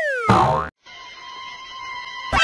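A cartoon sound effect: a whistle-like tone sliding steeply down in pitch, ending in a short boing-like hit about a third of a second in. After a cut to a moment of silence, a quieter steady tone hangs over low background noise.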